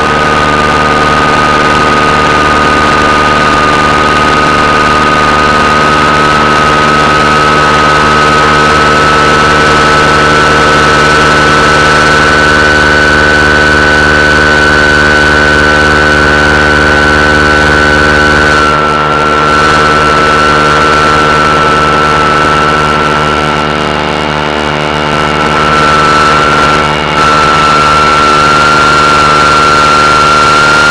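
AM radio loudspeaker sounding electromagnetic interference from an LCD monitor, picked up through a hand-held copper-wire antenna: a loud steady buzz made of many tones, with a high whine that drifts slowly upward in pitch. The sound dips briefly about two-thirds of the way in and again near the end, as the hand over the screen shifts.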